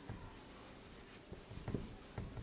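Marker pen writing on a whiteboard: faint scratching strokes, with a few louder strokes in the second half.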